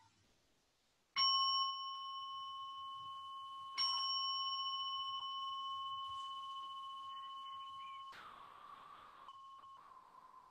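Meditation bell struck twice, about two and a half seconds apart, each strike ringing on with clear steady tones that slowly fade, marking the end of a sitting. Near the end the ringing is briefly covered by a hiss.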